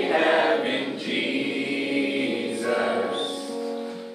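A small group of voices singing a song together, holding long notes, and fading down near the end.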